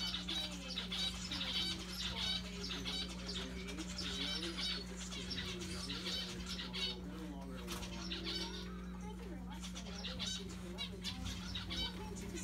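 Zebra finches calling: many short, high chirps repeating rapidly throughout, over a steady low hum.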